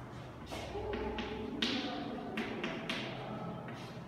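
Chalk tapping and scraping on a blackboard in a run of short, quick strokes as a word is written.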